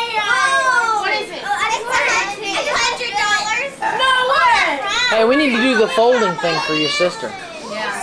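Several children's high voices talking and calling out over one another in excited, overlapping chatter, with no clear words.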